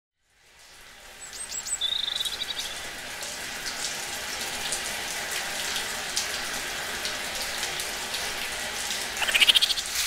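Running shower water hisses steadily, with a few high bird-like chirps about a second in. Near the end comes a rapid, high-pitched chattering trill, a mock 'Siberian barn squirrel' call.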